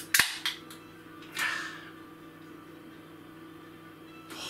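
Ring-pull of an aluminium beer can being opened: one sharp crack of the tab near the start, a few small clicks just after it, then a short hiss about a second and a half in.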